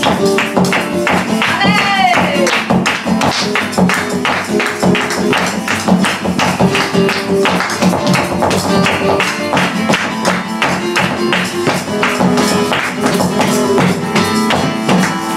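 Live flamenco music: hand-clapping (palmas) and handheld shakers keep a fast, even rhythm under guitar and voice, with a sung cry that rises and falls about two seconds in.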